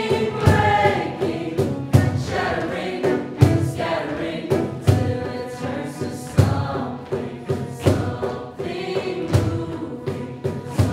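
A choir of voices singing together over a regular beat of sharp, low thumps, about two a second.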